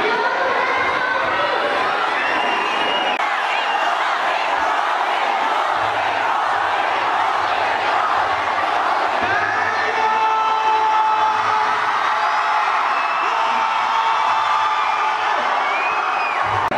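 A large crowd cheering and shouting continuously, with individual screams and held shouts rising above the general noise.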